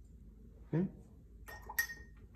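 A few quick light clinks of a paintbrush against a glass water jar, about one and a half seconds in, the last one ringing briefly.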